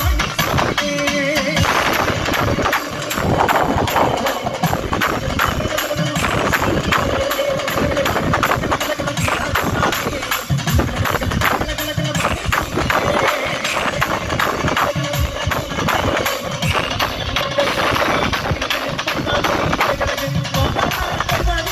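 Loud live Kerala folk music from a stage band over a PA: dense, steady drumming with singing over it.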